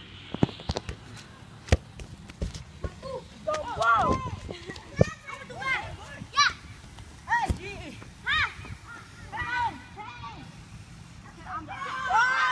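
Children shouting and calling out in short, high-pitched cries while playing soccer, with a few sharp knocks.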